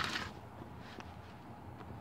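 Quiet room tone with a faint click about a second in.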